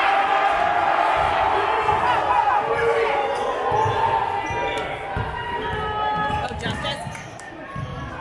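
A basketball dribbled on a hardwood gym floor, a run of irregular thuds, with sneakers squeaking on the court and a crowd talking and calling out in a large gymnasium.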